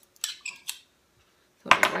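A metal measuring spoon clinking a few times with short ringing tones in the first second, then sharp clicks near the end.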